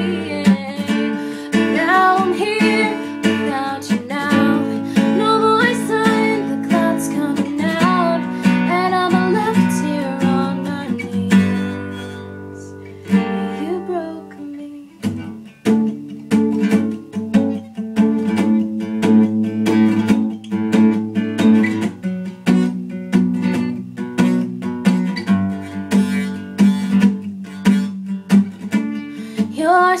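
A woman singing over a strummed steel-string acoustic guitar; about twelve seconds in the voice stops and a chord rings out and fades. The guitar then strums a steady chord pattern alone, and the voice comes back right at the end.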